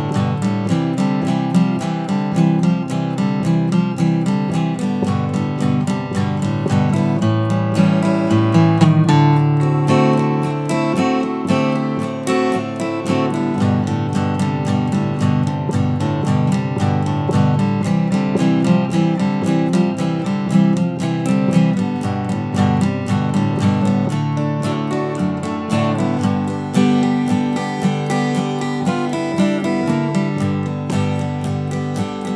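Solo acoustic guitar in standard tuning, played in a country style: strummed chords with bass-note runs between strums over G and C, a bass walk-down on the fourth string into D7 with sus2 and sus4 embellishments on the top string, then the second line of the instrumental back to G.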